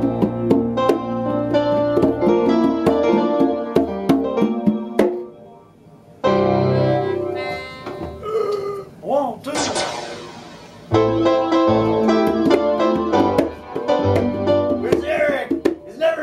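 Loose jam of synth keyboard chords with a melodica and sharp hand strikes on congas. The playing breaks off for about a second some five seconds in, then starts again.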